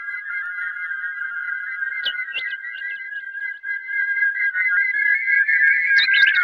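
Electronic music: several high, steady whistle-like tones held together, with a quick run of short chirping blips about two seconds in, getting louder toward the end.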